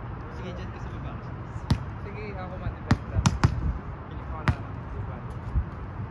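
A volleyball being struck in a pepper drill: about six sharp slaps of hands and forearms on the ball at irregular intervals, three of them in quick succession midway, over a steady low background rumble.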